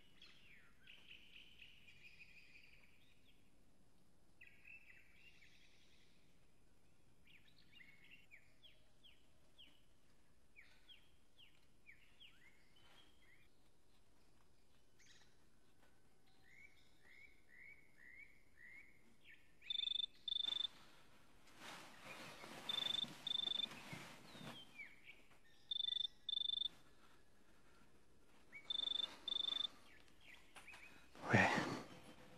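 Birds chirping and twittering, then a telephone ringing in short double beeps, each pair repeating about every three seconds, with a rustling noise under the first rings.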